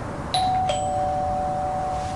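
Two-note ding-dong doorbell chime: a higher note struck, then a lower note, both ringing on.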